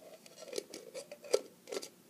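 Fingers tapping and rubbing on a glossy blue neti pot: irregular light clicks with soft brushing between them, and one sharper tap a little past halfway.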